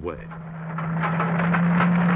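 Tank engine running with its tracks clattering, growing steadily louder, over a constant low hum.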